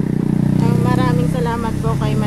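A motor vehicle's engine running steadily close by: a low, even hum, with a quieter voice over it.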